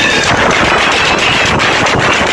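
Loud live praise music from an electronic keyboard and band, with fast, dense drumming.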